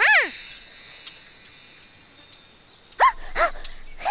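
A twinkling, magical chime shimmer fades away over the first two seconds, opening with one swooping up-and-down pitched whoop. About three seconds in come two short squeaky calls that rise and fall in pitch, like a character's wordless vocal noises.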